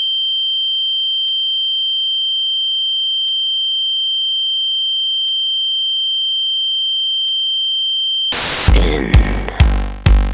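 A steady, high-pitched electronic sine test tone with faint ticks about every two seconds. Near the end it cuts off into a brief burst of static, and electronic dance music with a heavy kick drum begins.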